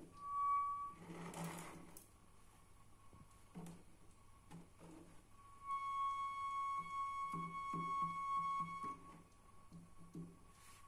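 A toilet's water supply singing: a clear whistling tone, like a flute, from water flowing through the braided steel flex hose into the cistern. A short note in the first second is followed by a few seconds of hand rustling and light knocks on the hose. A steady held note at the same pitch then runs from just past the middle until near the end.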